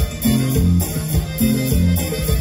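A live band plays an instrumental passage of a song, with guitar, bass and drums in a steady rhythm and no singing.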